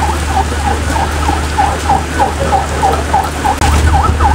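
Heavy rain falling steadily. Over it comes a short swooping tone repeated about three to four times a second.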